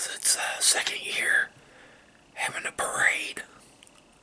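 A man whispering two short phrases, the second beginning about two and a half seconds in.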